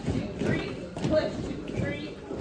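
Sneaker steps landing on a carpeted portable stage riser as dance steps are worked through, with voices talking.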